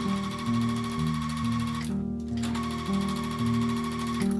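Electric sewing machine stitching a seam, a fast steady needle rhythm that stops for about half a second around two seconds in and then starts again. Background music plays throughout.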